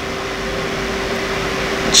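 Steady room noise: an even hiss with a faint, level hum.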